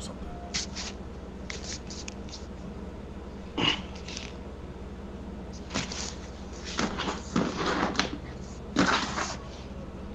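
Scattered short scuffs and taps, some single and some in quick clusters, over a steady low electrical hum.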